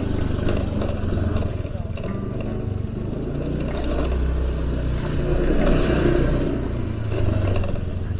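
Low steady engine rumble of a small cargo truck idling close by, swelling a little around the middle as it is passed, with a motor scooter coming up the lane.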